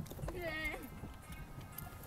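A woman says a single quiet "yeah", then a low background hiss follows with a few faint light clicks.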